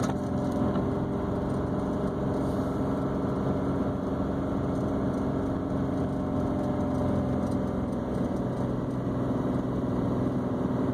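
Car engine and tyres running steadily, heard from inside the cabin while driving on a snow-covered road: an even low hum without changes in pitch.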